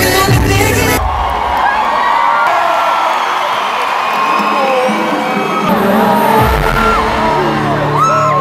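Arena concert crowd screaming and whooping in a break in the live music: the band's sound cuts out about a second in, leaving many overlapping screams, and the bass-heavy backing comes back in about six seconds in.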